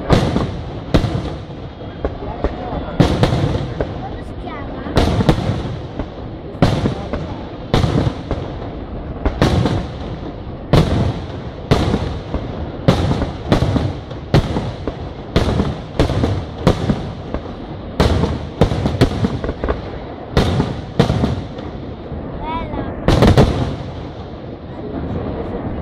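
Aerial fireworks shells bursting in quick succession, about one sharp report a second, with a continuous low rumble filling the gaps between them.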